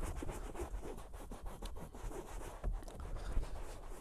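A microfibre towel scrubbed hard over a cloth car seat damp with upholstery cleaner: a quick, uneven run of rubbing strokes, many to the second, without pause.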